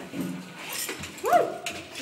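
A woman's wordless high-pitched vocal sound, a squeal that sweeps up and back down about one and a half seconds in and then holds a steady note briefly.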